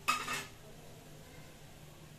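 A brief metallic clatter of a steel spoon and container against an aluminium pressure cooker, followed by faint, steady sizzling of hot oil with spices in the pot.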